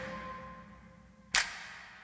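A quiet break in an electronic track: a faint held synth tone fades away, with one short, noisy percussive hit about a second and a third in.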